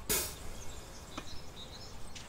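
Quiet outdoor background noise with a few faint, high bird chirps, broken by a short knock right at the start and a small click about a second in.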